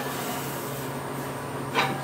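Sheet-metal gas tank being handled and set against a steel mini bike frame, with a short soft rub near the end over a steady low background hum.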